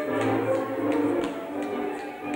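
Transylvanian folk dance music led by a fiddle, sustained bowed chords with a steady pulse, and short sharp clicks falling about three times a second.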